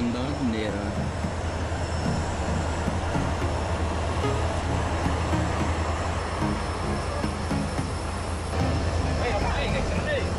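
Cabin noise of a Cessna 208B Grand Caravan's single Pratt & Whitney PT6A turboprop, a steady low drone with a broad hiss, as the plane taxis on the ground after landing.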